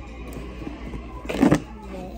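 A plastic knife cutting through modelling dough and knocking and scraping on a hard plastic tabletop: one short, loud scrape about one and a half seconds in, over a low steady hum.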